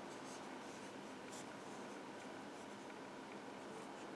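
Faint soft scratching and rubbing of yarn drawn over a metal crochet hook and through the fingers as single crochet stitches are worked, over a low room hiss.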